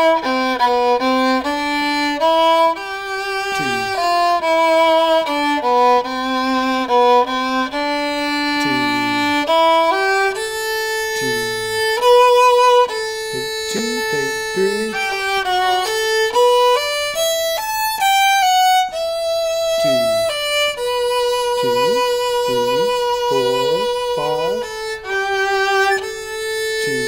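Violin playing an orchestral second-violin part: a line of bowed, mostly held notes changing pitch, with a quick rising run of notes about two-thirds of the way through. A man's voice sounds faintly under the playing.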